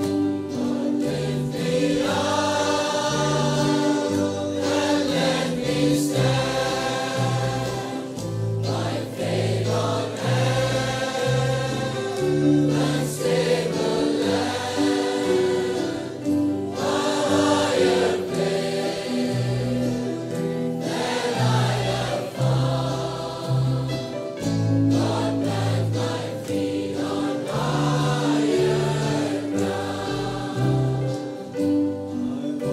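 A choir singing a gospel or worship song, held chords moving every second or so over steady low accompanying notes.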